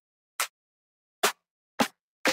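Trap drum-kit snare samples played one at a time: three short, separate snare hits, each a different sample, with silence between them.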